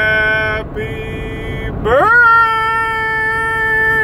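A man singing solo in a high, strained voice, holding long drawn-out notes. The first note fades about half a second in, a softer held tone follows, and about two seconds in his voice swoops up into another loud, long-held note. Steady car road noise runs underneath inside the cabin.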